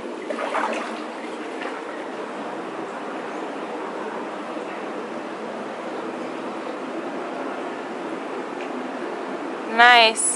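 Steady running water of a plunge pool, an even rushing trickle that holds unchanged, with a slightly louder stir of the water about half a second in.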